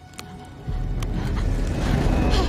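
Film soundtrack: a deep rumbling swell of score and sound effects that jumps up sharply about two-thirds of a second in and keeps building, with a couple of faint clicks.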